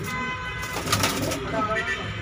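Domestic pigeons cooing, with one sharp click about halfway through.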